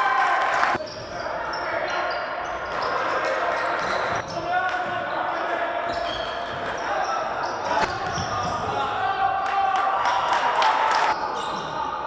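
Live court sound of a basketball game in a large, echoing hall: the ball bouncing on the hardwood with sharp knocks, under players' calls and voices.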